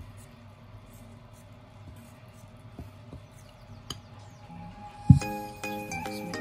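A metal spoon stirring flour and egg batter in a bowl, with faint clinks and scrapes. About five seconds in there is a loud thump, and background music with held notes begins.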